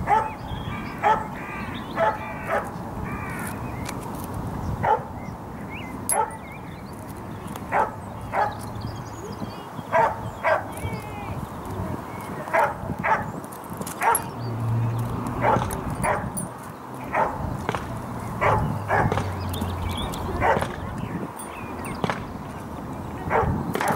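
Short, sharp animal calls, about one a second and often in pairs, repeated throughout.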